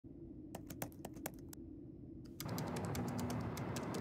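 Keyboard typing clicks, an irregular run of quick keystrokes matching on-screen text being typed out. About halfway through, a steady road rumble comes in under the clicks.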